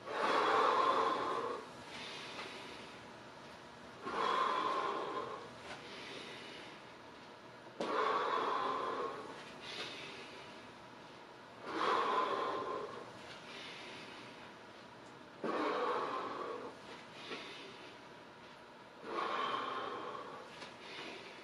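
A man breathing deeply and forcefully in time with a repeated stretch: a loud rush of breath about every four seconds, six in all, each lasting about a second and a half and fading away.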